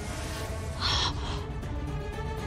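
Dramatic background music with a low rumble and held notes. About a second in comes a short breathy rush of sound, like a gasp.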